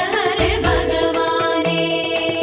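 Tamil devotional song to Krishna, in a passage between sung lines: steady held melodic notes over regular percussion strokes.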